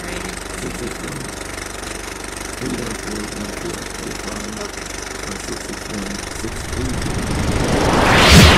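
Steady low mechanical rumble, like an engine running, growing louder near the end.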